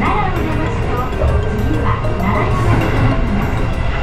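Train running along the track, a steady low rumble heard from inside the carriage, with background music over it.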